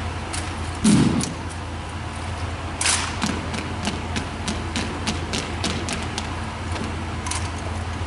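Silent rifle drill: irregular sharp slaps and clacks of hands striking rifles and of rifle fittings rattling, with one heavier low thump about a second in, over a steady low hum.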